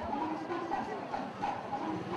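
Indistinct voices of people talking, with no clear words.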